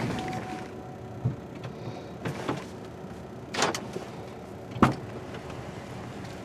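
Low steady rumble inside a vehicle cab with a few scattered clicks and knocks, then a sharp click near the end as the passenger door latch is opened for someone to get in.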